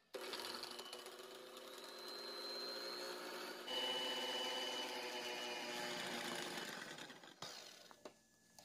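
Electric hand mixer running steadily, its twin metal beaters whipping egg whites and sugar into a thick Swiss meringue in a glass bowl. The motor hum turns a little louder about four seconds in and fades out shortly before the end.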